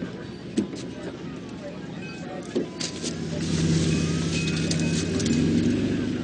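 A truck engine running, growing louder about halfway through as it pulls away, with sirens sliding up and down in the background and a few sharp knocks and clicks.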